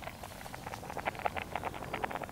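Food bubbling in a small camping-stove cooking pot: a faint, rapid, irregular popping that grows denser after about a second.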